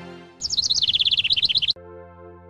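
A bird calling in a rapid run of short, high chirps that slide down in pitch and then rise again in quick pairs, for just over a second. It starts and stops abruptly. Music fades out just before the calls, and a held music chord comes in right after.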